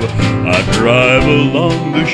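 Acoustic string-band music with guitar and string bass, in a country or bluegrass style, with a sliding lead line over a steady bass and no singing.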